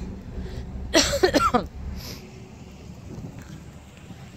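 A woman coughs once, about a second in, over wind buffeting the microphone and a low rumble that fades away about halfway through.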